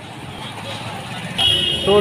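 Faint background chatter and room noise, then an abrupt switch to busy street traffic noise. About one and a half seconds in, a steady high-pitched vehicle horn starts sounding.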